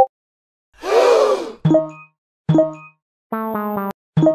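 Short pitched notification pings, two of them a little under a second apart in the middle, as chat messages pop up; a brief pop at the start. About a second in there is a groaning, voice-like sound effect, and near the end a buzzy, steady tone lasting about half a second.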